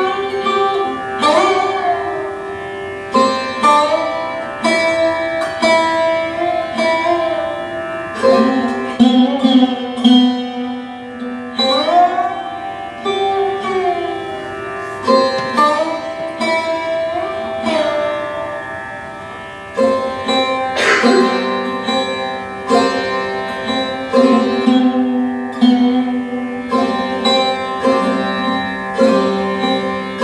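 Sarod played solo in raga Yaman: single plucked notes, many sliding up or down in pitch, over the steady ringing of its sympathetic strings, at a slow unmetred pace with no tabla.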